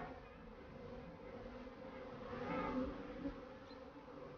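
Honeybees buzzing in a steady hum that swells louder past the middle and then eases off.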